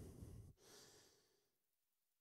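Near silence: a faint breath on a handheld microphone in the first half second, then room tone.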